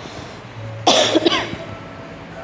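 A person coughing: a short fit of about three quick coughs about a second in.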